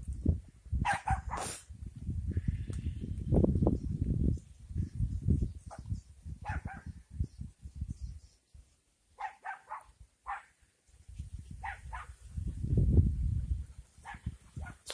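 A dog barking in short bursts, several times, over an irregular low rumble of wind on the microphone.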